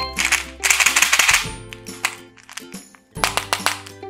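Candy-coated chocolates rattling inside a small clear lidded jar as it is shaken: two bursts of rapid clicking, the first in the opening second, the second about three seconds in, over background music.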